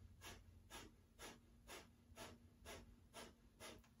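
Breath of fire: faint, rapid, forceful breaths in and out through the nose, about two a second, each exhale driven by a contraction of the abdominal muscles.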